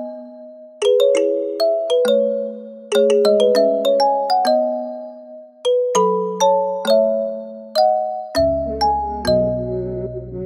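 Background music: a melody of light struck notes that each ring out and fade, like chimes. A low bass line comes in about eight seconds in.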